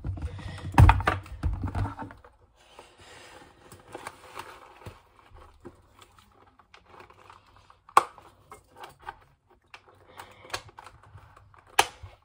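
Handling noise from a Schutt F7 football helmet being put on. There are a few knocks in the first two seconds, then faint rustling and scattered sharp clicks as the chin strap is fastened, with two louder clicks about eight seconds in and near the end.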